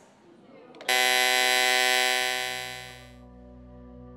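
A loud electronic chime rings out suddenly as the red launch button is pressed, fading away over about two seconds. It gives way to a soft, steady ambient music drone as the portal's intro begins.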